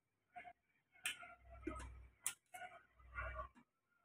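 A metal ladle clinking and scraping against a stainless steel pot while stirring and scooping a thin curry. There are several light knocks, and the sharpest clink comes a little past halfway.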